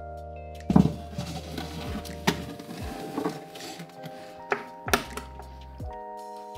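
Soft background music with steady held chords, over a heavy thunk about a second in, then scraping and a few more knocks, as a glass terrarium tank is set down and pushed back into place.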